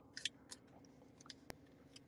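Near silence with a few faint clicks, the sharpest about one and a half seconds in.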